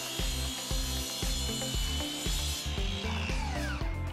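Mitre saw cutting through a composite decking board with a steady high whine, then the blade spinning down after the cut, its pitch falling over the last second or so.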